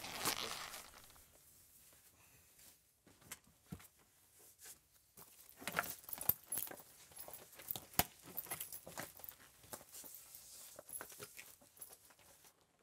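Faint rustling of clothing with scattered small clicks and taps, as a shirt is pulled off over a leather vest; the clicks bunch up about halfway through and run on until near the end.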